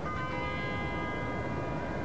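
A bell struck once just as the sound begins, its cluster of tones ringing on steadily afterwards.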